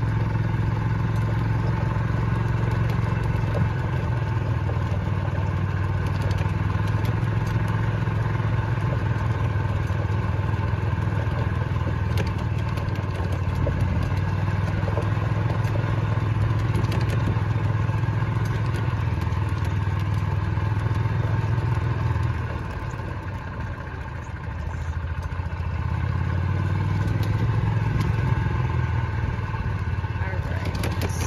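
An engine running steadily with a low hum, easing off briefly about three-quarters of the way through, then picking up again.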